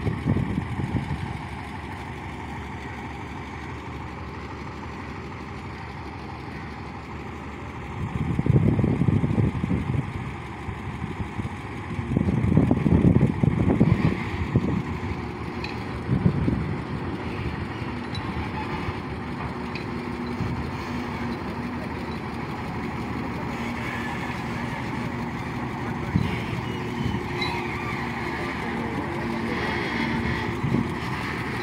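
Heavy tractor-trailer's diesel engine running at low speed as the rig reverses. There are two louder low surges about eight and twelve seconds in, and in the second half a steady engine hum grows plainer as the truck draws nearer.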